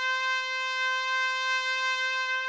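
A trumpet holding one long, steady note.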